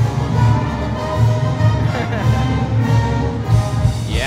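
Live house band playing a short college football fight-song tune, with a steady drum beat under sustained melody.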